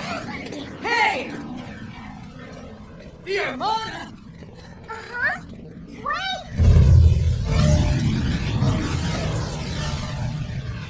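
Several short vocal exclamations with rising pitch, not words, then a loud low rumble that starts about two-thirds of the way through and carries on.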